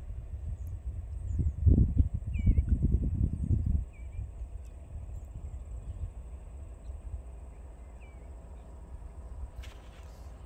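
Wind buffeting the microphone in gusts, heaviest in the first four seconds and easing after, with a few faint bird chirps.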